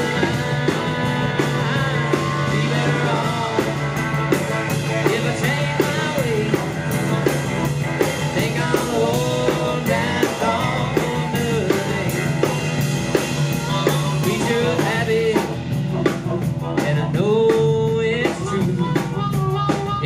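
Live band playing: fiddle, electric and acoustic guitars, bass guitar and drum kit together, with a steady beat and a sliding melodic lead line on top.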